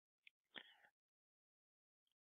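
Near silence, with two faint computer keyboard clicks within the first second as the login is submitted.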